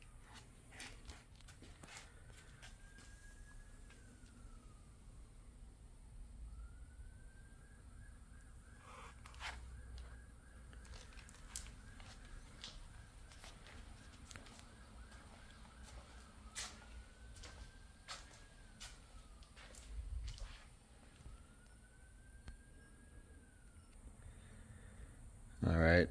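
Faint clicks and knocks of the 1962 VW bus's engine lid, rear hatch and doors being unlatched and swung open. A faint high tone that rises and then falls recurs several times, one held longer with a warble.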